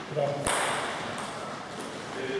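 A brief shout from a player, then one sharp click of a table tennis ball striking the wooden floor about half a second in, echoing in a large hall.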